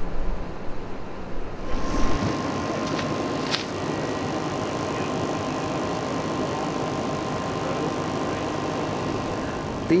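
Steady background noise with a faint steady tone, after a low rumble that stops about two seconds in.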